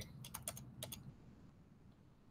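A few faint computer keyboard keystrokes in the first second, then near silence.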